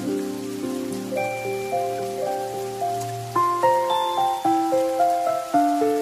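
Slow, gentle piano music over a steady hiss of rain. The notes come more often, about two a second, from about halfway through.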